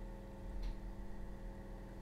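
Faint background music: a soft sustained chord held steady under a gap in the narration.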